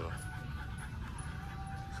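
A micro bully dog panting, under a steady low background hum.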